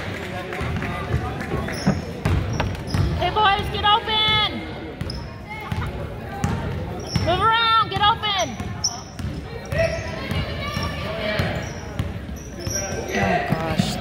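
A basketball being dribbled on a hardwood gym floor, its bounces echoing in the hall, mixed with voices shouting from the court and sideline.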